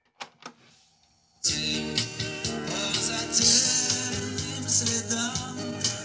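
Two clicks from the cassette deck's play key, then about a second and a half in, music with singing starts playing back from a cassette freshly dubbed on the same deck. The copy is mediocre: the tape is chewed and the heads are uncleaned.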